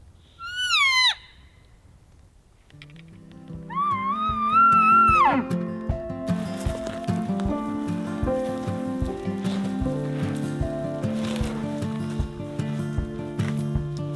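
Two bull elk bugles: a short high squeal sweeping down near the start, then a longer, wavering whistle about four seconds in that drops away at its end. Background music with a steady beat comes in partway through and carries on.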